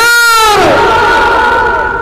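A man's voice through a microphone and loudspeakers: a high-pitched shout that rises and falls, then is drawn out as one long held vowel for over a second.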